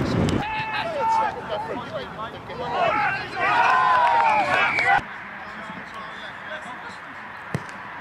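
Men's voices shouting loudly and excitedly on a football pitch for about four seconds, as players react to a goal. The shouting stops abruptly, leaving a quieter outdoor background with one sharp knock near the end.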